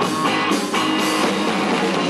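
Live rock band playing: guitar over a drum kit, with cymbal hits, in a passage where the vocal drops out.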